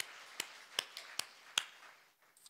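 A man clapping his hands in a steady rhythm, five claps about two and a half a second, growing softer.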